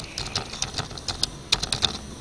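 Computer keyboard being typed on: about a dozen quick key clicks in two runs, with a brief pause between them and the later clicks loudest.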